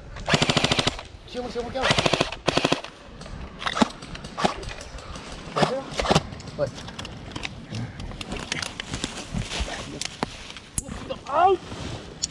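Airsoft guns firing: two short automatic bursts of rapid, evenly spaced shots in the first three seconds, then scattered single shots.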